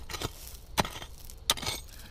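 A mattock blade chopping into a hard gravel road shoulder to break out a small hole. There are a few sharp strikes about two-thirds of a second apart, with loose stones clattering.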